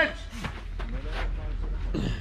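Faint voices from onlookers, broken by a few soft knocks.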